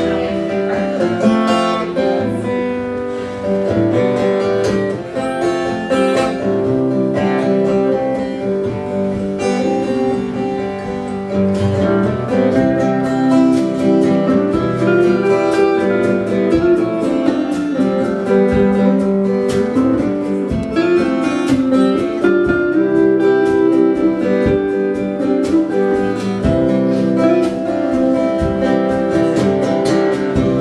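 A small live band playing an instrumental intro: strummed acoustic guitar, electric lead guitar and a drum kit, with no singing.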